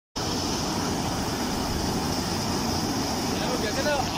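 Muddy canal water rushing steadily over a concrete weir and churning below it. A voice comes in near the end.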